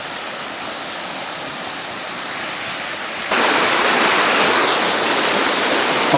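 Shallow stream rushing over rocks in a steady flow. About three seconds in it suddenly becomes louder and brighter, as the sound switches to close-up rapids.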